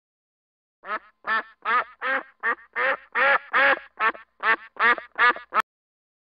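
Mallard duck, a hen, quacking in a steady run of about a dozen short quacks, roughly two and a half a second. The run starts about a second in and ends just before the close.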